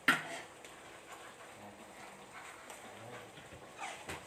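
A single sharp knock at the start, then faint scattered light clicks and taps, with another small knock near the end.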